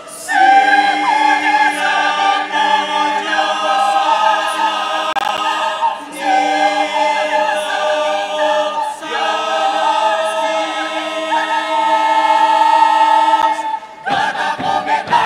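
Choir singing unaccompanied in held, sustained chords, with short breaks between phrases about six and nine seconds in.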